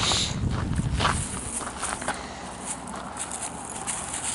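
A person's footsteps while walking, as faint irregular ticks over a steady outdoor background noise, with a louder rumble in the first second or so.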